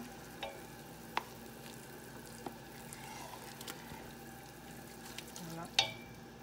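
Wooden spoon scraping thick palm nut cream out of a can into a steel pot of hot water and stirring it, with a few sharp knocks of spoon or can on the metal, the loudest near the end. A faint steady hiss of the hot water runs underneath.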